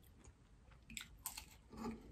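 Faint close chewing of a mouthful of spring roll, with a few soft crunches about a second in and a brief murmur from the eater near the end.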